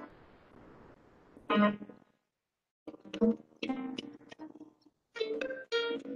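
Piano music played in short phrases of struck notes that ring and fade, with a brief silence between phrases a little after two seconds in.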